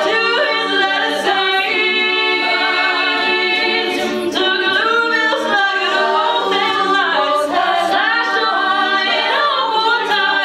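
An all-female a cappella group singing live, a lead voice over layered backing vocal harmonies.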